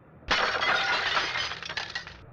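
Glass smashing: a sudden crash about a third of a second in, followed by a dense clatter of many small impacts for nearly two seconds, which then cuts off suddenly.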